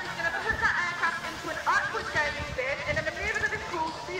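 Several people's voices talking at once, overlapping chatter with no clear words.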